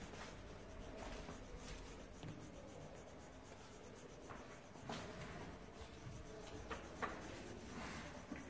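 Coloured pencil scratching on paper as a drawing is coloured in: a faint, steady rasp with a couple of light ticks in the second half.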